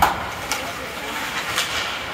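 Ice hockey game on the ice: skates scraping and sticks clacking, with a sharp knock right at the start and lighter clicks after it, under the voices of players and spectators in the rink.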